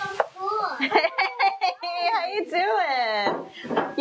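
Speech only: a child and a woman talking in a kitchen greeting, with one long, high drawn-out word from the child about two and a half seconds in.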